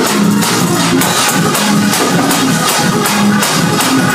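Live gospel praise-break music: a church keyboard or organ playing a bass line under a fast, steady percussive beat.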